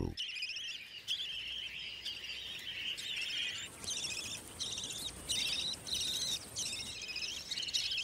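Budgerigars chirping and warbling in a quick, continuous high chatter. The chatter grows louder in bouts from about four seconds in.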